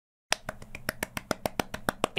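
Rapid light hand claps, fingertips tapping against the other hand, about eight a second, starting about a third of a second in after a moment of dead silence.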